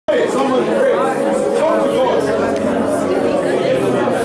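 A group of people praying aloud all at once: many overlapping voices in a steady, unbroken babble.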